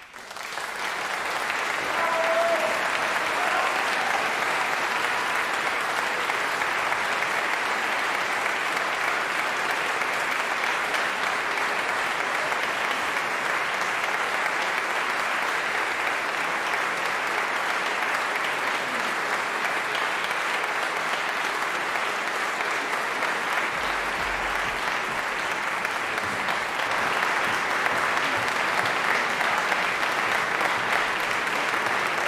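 Concert audience applauding at the end of an aria. The applause starts suddenly, builds over the first two seconds, holds steady, and swells a little near the end.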